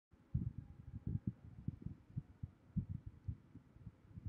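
Soft, irregular low thumps, a few each second.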